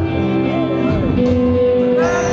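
A live band playing a slow passage: sustained keyboard chords with guitar, notes held steadily.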